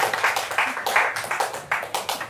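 Audience applause dying away, the claps thinning out and growing quieter toward the end.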